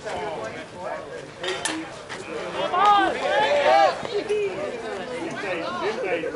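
Players calling out and chattering across a softball field, the voices rising to loud shouts about halfway through. A few short, sharp clicks come about a second and a half in.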